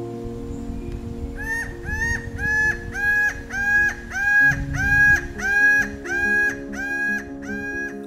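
Laughing falcon calling: a long, even series of identical notes, about two a second, each rising briefly and then held. The notes begin about a second and a half in and are loudest in the middle.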